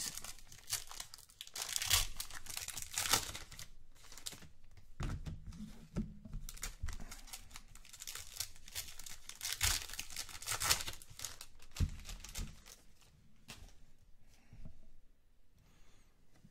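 Foil trading-card pack wrappers being torn open and crinkled by hand, in irregular bursts of tearing and crackling that thin out near the end.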